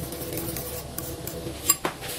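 Small metal spoon stirring a thick sauce mix in a bowl, with two light clinks against the bowl near the end.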